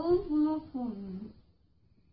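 A girl humming a short wavering tune for about a second and a half.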